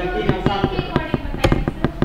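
Irregular sharp clicks or pops, several a second, with a faint voice underneath.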